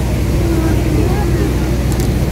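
Steady low rumble of a passenger boat's engine running underway, with faint voices over it.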